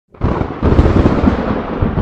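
Loud, rolling, thunder-like rumble from a cinematic logo-intro sound effect, starting abruptly just after the start and rumbling on without a break.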